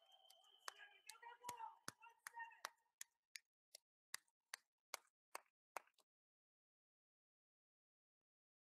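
Near silence with a run of faint, sharp clicks, about two and a half a second, that fade and stop about six seconds in.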